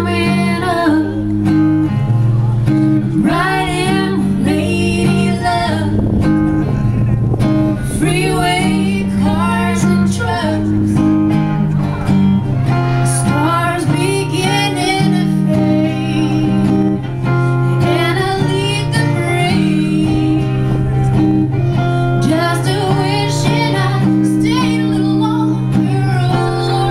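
Live song: a guitar strummed in steady chords under female singing, with the voice coming in and out in phrases.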